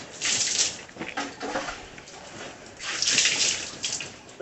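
Water thrown from a plastic dipper splashing over pigs and the wet concrete floor of their pen: two loud splashes, one just after the start and one about three seconds in.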